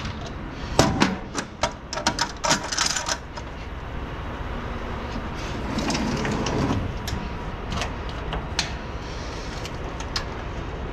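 Stainless steel tanker manway lid being shut and its clamps latched: a quick run of sharp metal clicks and clanks in the first three seconds, then a few scattered clicks near the end, over a steady low rumble.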